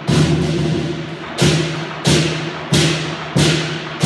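Lion dance percussion: a big drum and clashing cymbals struck together about five times, roughly every two-thirds of a second, each crash fading before the next.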